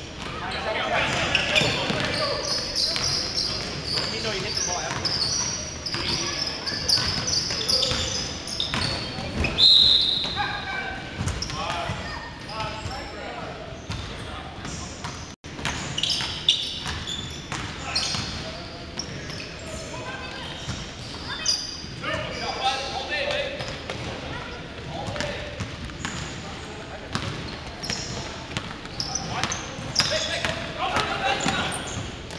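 Game sounds of a basketball game in a gym: the ball bouncing on the hardwood, sneakers squeaking, and players' indistinct calls and voices, all echoing in the large hall. There is a short, loud, high squeak about ten seconds in, and the sound drops out for an instant about halfway.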